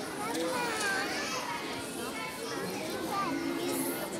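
Audience voices, many people talking and calling out at once, children's voices among them. Near the end a steady low held tone comes in.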